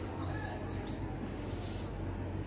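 A small bird chirping: a quick run of short, high notes, about five a second, that stops about a second in, over a steady low background hum.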